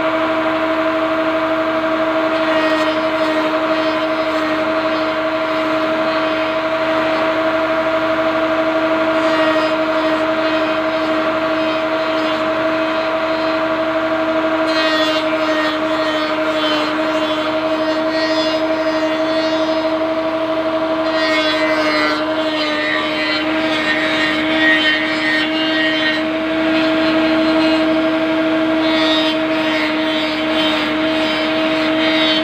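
Electric motor running at a steady hum, driving a rotary cutter that carves a wooden bowl blank. Scratchy, rasping wood-cutting noise joins the hum about halfway through and again through most of the last third as the blank is pressed against the cutter.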